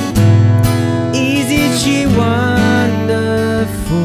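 Epiphone jumbo acoustic guitar, capoed at the second fret, strummed through a simple chord progression, with a man singing the melody along with it; a louder chord rings out just after the start.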